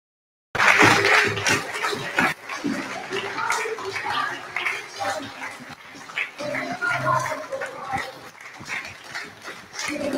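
Several voices talking over one another, mixed with scattered clicks and knocks, starting abruptly about half a second in.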